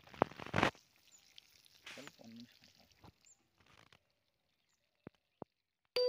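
Water poured from a clay pot splashing onto loose, freshly dug soil, with two short louder splashes in the first second.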